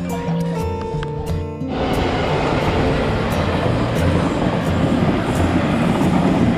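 Background music, joined less than two seconds in by the steady rushing noise of a passing Taiwan Railway passenger train, which runs on under the music.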